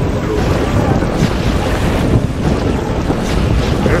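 Wind blowing on the microphone as a steady low rumble, over small sea waves lapping at the shore.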